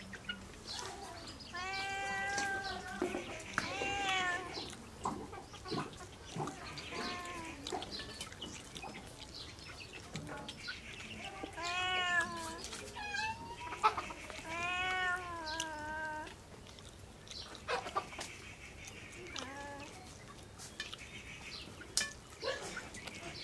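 An animal calling about five times in short calls that rise and fall in pitch, together with close-up eating sounds: clicks and smacks from chewing with the mouth near the microphone.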